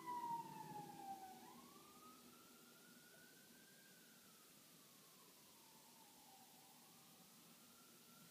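The last acoustic guitar chord rings out and fades in the first second or two. Then, in near silence, a faint siren wails, its pitch sliding slowly down and back up every few seconds.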